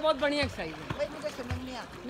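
A person's voice in a few short stretches of speech or drawn-out vocal sounds, some held at a steady pitch.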